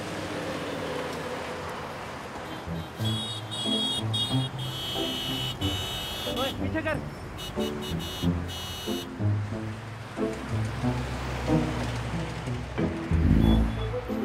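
Background music with a stepping bass line, with a car horn honking in repeated blasts through the middle stretch.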